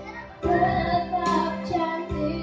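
A girl singing through a microphone over guitar accompaniment; her sung line comes in about half a second in, after a brief dip.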